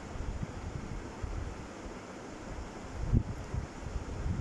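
Low rumbling handling noise on the microphone over a pan of simmering kofta gravy, with irregular muffled knocks and one louder knock about three seconds in as a spatula goes into the pan.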